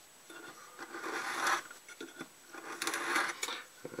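Hobby knife blade drawn through soft foam along a metal square: two scraping strokes about a second long each, with a few light ticks between them.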